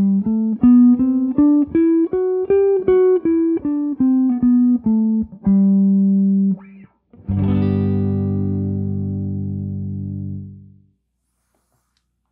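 Gibson Les Paul electric guitar playing a G major scale one note at a time, up an octave from the G on the 15th fret of the low E string and back down, ending on a held low G. A chord is then struck once and left to ring, fading out over about three seconds.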